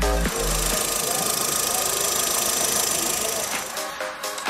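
Volkswagen Saveiro's four-cylinder engine idling steadily, heard from the open engine bay. A backing music track cuts out just after the start and comes back near the end.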